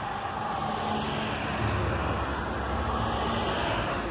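A motor vehicle running past on the road, a steady engine rumble and road noise that swells from about a second and a half in and eases near the end.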